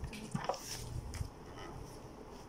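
Soft rustling and handling noise from the paper pages of a paperback book being flipped through by hand, in a few brief scrapes.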